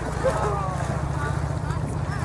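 Several people talking at a distance, their voices overlapping, over a steady low rumble.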